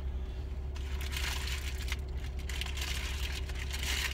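Paper wrapper crinkling and rustling as a wrapped burrito is handled, starting about a second in, over a steady low hum in a car cabin.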